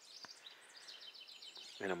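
A small songbird singing faintly: a fast run of high, evenly repeated chirps lasting about a second.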